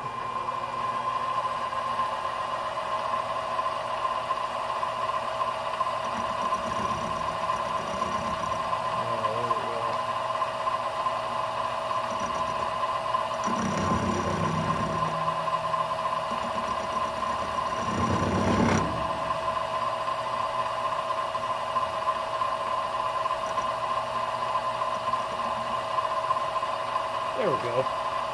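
Benchtop milling machine running with a steady high whine as its end mill cuts a rounded corner into a speed square. The cut turns louder and rougher twice, around the middle.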